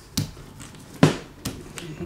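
Four sharp clicks and taps over a quiet background, the loudest about a second in, as a rubber brayer is picked up and set against the paper over the gelli plate.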